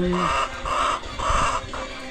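Caged white laying hens calling: three short calls about half a second apart.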